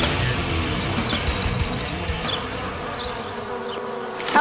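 Music fading out over the first three seconds, leaving a steady high-pitched insect buzz from the brush, with a few short falling chirps.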